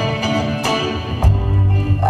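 Resonator guitar played live, single plucked notes ringing over sustained chords, with a deep low note coming in just past a second in.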